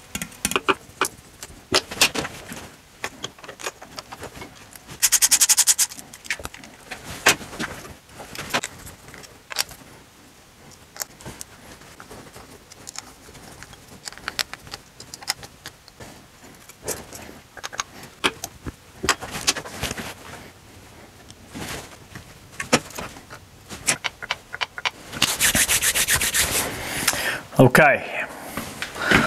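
Hand tools working on a two-stroke moped engine: scattered small metal clicks and knocks. Two spells of rapid, evenly spaced clicking come about five seconds in and again near the end.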